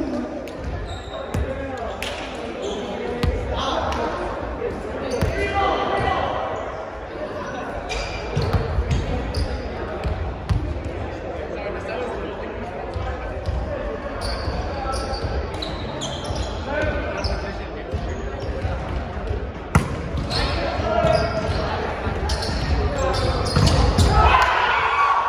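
Volleyball bouncing and being struck, short sharp knocks on a hardwood gym floor, among players' indistinct chatter, all echoing in a large gymnasium. One knock just before 20 seconds in is louder than the rest.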